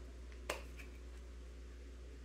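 A single sharp plastic click about half a second in, typical of a spice shaker's flip-top cap snapping shut, over a faint steady low hum.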